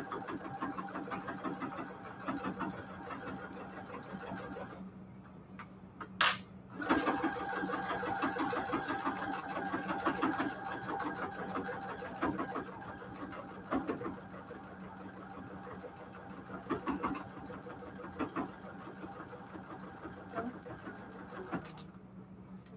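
Baby Lock sewing machine stitching steadily through a padded patchwork mat, rapid needle strokes over a motor hum. It stops for about two seconds around five seconds in, with a single click in the gap, then runs on.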